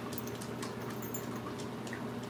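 Aquarium equipment running: a steady low hum with faint, irregular ticks and clicks over it.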